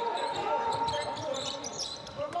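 Basketball bouncing on the court, with players' voices calling out in a hall with hardly any crowd noise.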